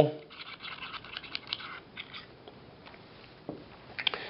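Metal tool's scraping hole scraping along a SCAR 17 gas piston shaft, a rough scratching for about the first two seconds. A few faint clicks and a soft knock follow near the end as the parts are handled.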